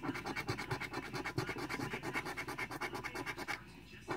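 A coin scratching the coating off a paper scratch-off lottery ticket in quick, even back-and-forth strokes, several a second, stopping shortly before the end.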